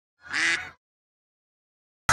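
A single duck quack, short and nasal, about half a second long, sounding as the duck logo appears.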